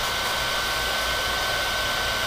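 A steady, even hiss with a thin high whine running through it, unchanging throughout.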